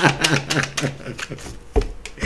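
Tarot cards being shuffled by hand, a quick run of clicking, under a man's fading laughter; a soft low bump near the end.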